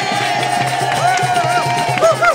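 Folk dance band playing a border morris tune. A long held note gives way, about a second in, to a run of short repeated notes that rise and fall, over a steady low pulse.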